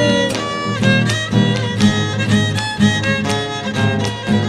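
Instrumental passage of a cueca: a violin leads over strummed acoustic guitars and a bass drum, the beat falling about twice a second.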